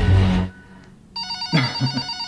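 A telephone ringing: a steady electronic ring tone starts about a second in, after a loud low rumble cuts off about half a second in.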